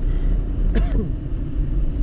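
Steady low rumble of a car's engine and road noise heard from inside the cabin while driving. A short vocal sound that falls in pitch cuts in briefly just under a second in.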